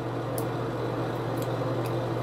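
A steady low machine hum, with a few faint light ticks.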